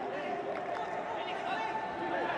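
Steady background din of a football match broadcast, with faint voices in it.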